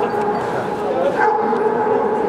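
Dogs whining and yipping: a held, wavering whine that breaks off and starts again, with short yips, over murmuring crowd voices.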